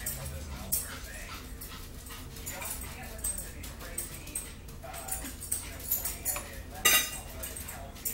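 A dog whining and whimpering off and on, with small cutlery clinks; a plastic cup is set down on a wooden table with a sharp knock about seven seconds in.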